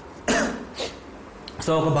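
A man's single short cough about a third of a second in, followed by a brief breath; his speech resumes near the end.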